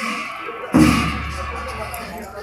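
A single sudden, deep thump about three-quarters of a second in, fading away afterwards, over a background of voices.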